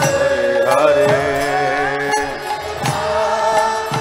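Devotional kirtan music: a harmonium holds sustained notes under group chanting, with drum strokes roughly once a second.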